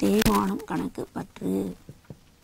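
A woman's voice speaking, a few short phrases that stop near the end.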